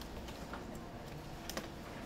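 A few light clicks and taps, about half a second in and again near the end, over quiet room noise.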